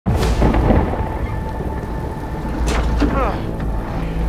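Steady rain over a deep, continuous low rumble, with a sharp knock about two and a half seconds in.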